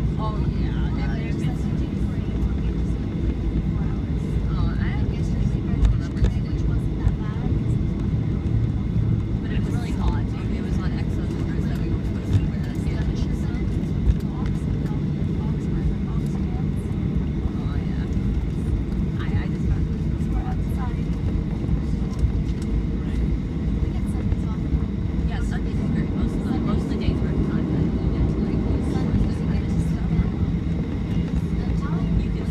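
Cabin noise inside a WestJet Boeing 737 taxiing: a steady low rumble from the jet engines and the wheels rolling on the taxiway. Faint, indistinct passenger chatter and a few light clicks sit on top.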